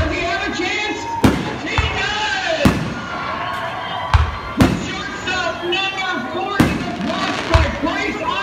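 Aerial fireworks shells launching and bursting: about eight sharp booms and deep thumps, roughly one a second, over a background of voices.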